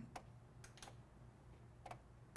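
Near silence broken by about four faint, scattered clicks from a computer being operated, keys or mouse.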